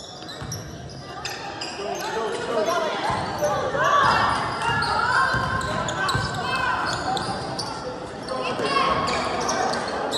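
Sounds of a youth basketball game in an echoing gym: a ball dribbling on the hardwood floor, short sneaker squeaks, and indistinct shouting from players and spectators, loudest in the middle.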